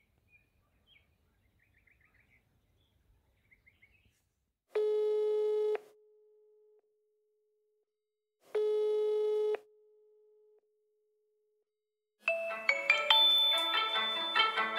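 Two telephone ringback tones about four seconds apart, each a low buzzy tone lasting about a second, as a dialled call rings. About twelve seconds in, a mobile phone's marimba-style ringtone starts playing. Faint bird chirps come in the first few seconds.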